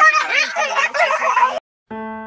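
A person making loud, high warbling vocal noises that swoop up and down in pitch several times a second, cutting off suddenly near the end.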